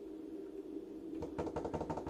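A pot of spaghetti boiling: over a faint steady hum, a quick run of popping bubbles starts about a second in, roughly ten pops a second. It is the boiling sound the cook listens to in order to judge when the pasta is nearly cooked.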